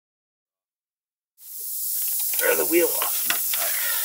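Silence, then about a second and a half in a steady hiss fades in: air escaping from the punctured tire. A few small clicks and a short muffled vocal sound come through it.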